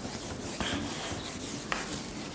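Whiteboard duster rubbing marker off a whiteboard in repeated wiping strokes, with two firmer swipes, one about half a second in and one near the end.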